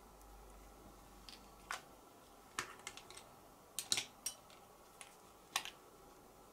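Sharp, irregular clicks and taps of small plastic art tools being handled: a paintbrush put down and a Posca paint pen taken up, about eight clicks in all, the loudest near the middle.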